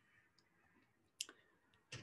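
Near silence between words, broken by one short faint click about a second in.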